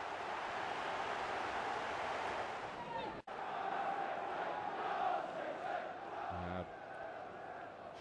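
Football stadium crowd cheering a goal, cut off abruptly about three seconds in. It is followed by steady crowd noise with a chant rising through it.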